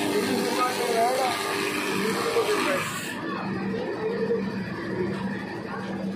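A man talking over a steady background hum and hiss; about halfway through, the sound cuts abruptly to a duller, quieter track with the hiss gone.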